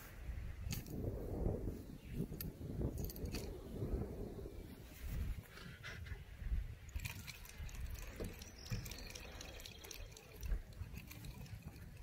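Wind rumbling unevenly on the microphone outdoors, with a few faint clicks and rustles.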